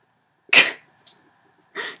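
A woman lets out one short, sharp burst of breath about half a second in, a brief noisy huff without a pitched voice that fades quickly; a faint tick follows.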